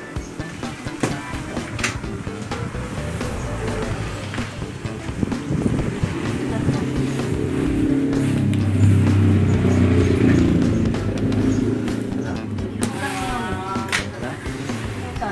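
A motor vehicle passing by, its engine growing louder to a peak about two-thirds of the way in and then fading. Plastic bubble wrap rustles as it is handled.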